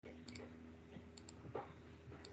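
Faint computer mouse clicks in two quick pairs, about a second apart, over a low steady electrical hum.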